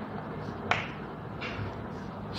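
Chalk tapping against a blackboard while writing: one sharp tap about 0.7 seconds in and a fainter one near 1.5 seconds, over low room noise.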